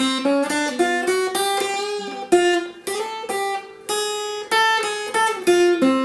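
Ibanez PF15ECE electro-acoustic guitar playing a slow single-note lead solo on the top two strings. A run of picked notes climbs in half steps, followed by a string bend and slides.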